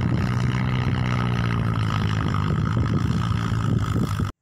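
An engine running steadily at an even speed.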